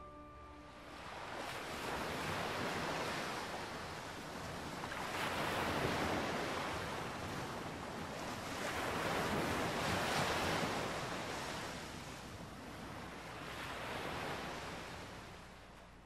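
Ocean surf, waves breaking and washing back in slow surges about every four seconds.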